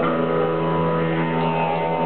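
Live electric blues band holding one long sustained chord, a steady drone with no beat.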